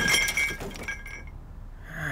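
Ceramic teapots and cups clinking and rattling as they settle after a crash, with a ringing that dies away about a second in.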